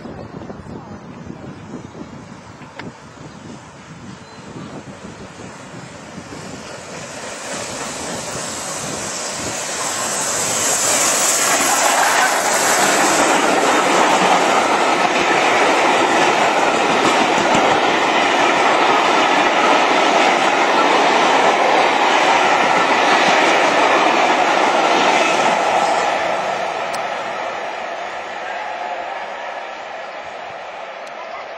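Steam-hauled passenger train passing close by. The sound builds from about six seconds in and stays loud for some fifteen seconds as the coaches run past, with a high hiss early in the loud part. It fades near the end as the train pulls away.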